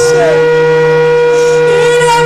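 Worship music on a keyboard: a held chord, one long steady note over a bass note that steps up right at the start, with a voice briefly heard over it.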